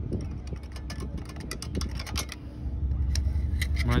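Long screwdriver scraping and clicking against a Mazda Miata's front brake through the wheel spokes, picking out dirt and dust caked in the brake. Quick, irregular clicks over a low steady rumble.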